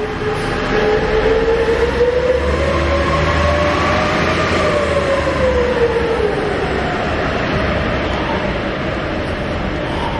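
A transit bus pulling away. Its drivetrain whine rises in pitch for about four seconds, then falls and fades, over a low engine rumble.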